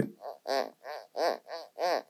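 A fingertip rubbed back and forth over the textured glass back of a Xiaomi Mi 11 Special Edition phone, squeaking about three times a second, each squeak rising and falling in pitch.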